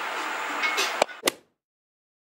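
Faint background television speech over room noise, then two sharp clicks about a quarter second apart, about a second in, after which the sound cuts to silence.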